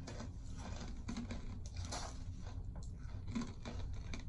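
Two people chewing crunchy strawberry-flavoured Gouda cheese snack bites, making faint, irregular crunching.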